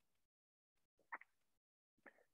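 Near silence, with one brief faint sound about a second in.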